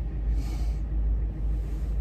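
Low, steady rumble of a Ford Crown Victoria's engine and road noise heard from inside the cabin while driving.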